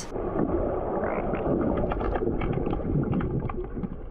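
Swimming-pool water heard through an underwater camera during an underwater hockey game: a dense, muffled rumble with many small clicks and knocks scattered through it.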